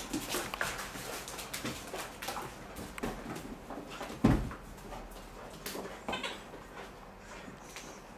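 A dog rummaging and playing among blankets and toys on a wooden floor: irregular scuffling, rustling and clicks, with one heavy thump about four seconds in and a brief high-pitched sound a couple of seconds later.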